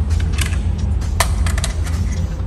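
A few sharp clicks and knocks as an AR-15 magazine is picked up off the shelf and fumbled at the rifle's magazine well, over a steady low hum.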